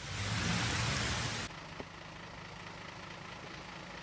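Steady hiss of heavy rain that cuts off abruptly about a second and a half in, giving way to a quieter steady outdoor background with a low hum.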